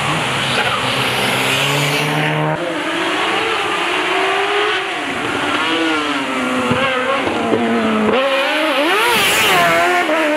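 A competition car's engine revving up and down as the car weaves through an autoslalom cone course, its pitch swinging quickly near the end, with tyres squealing.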